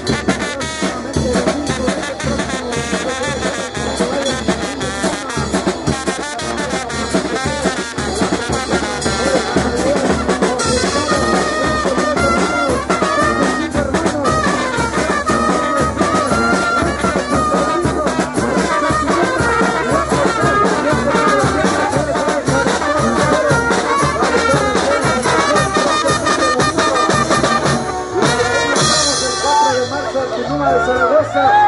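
A Mexican brass band (banda) playing a lively tune, with sousaphone, trombones, saxophones and trumpets over a drum kit with cymbals. The music runs on without a break and thins briefly near the end.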